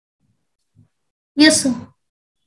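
Silence, then a voice saying a single word, "yes", about a second and a half in.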